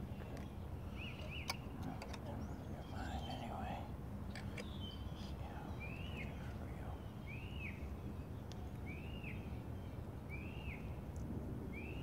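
A bird calling outdoors: a short arched chirp repeated about every second and a half in the second half, with a few quicker chirps earlier, over steady background noise.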